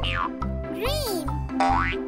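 Bouncy children's background music with cartoon sound effects laid over it: a falling whistle-like glide at the start, a boing-like rise and fall about a second in, and a rising swoop near the end.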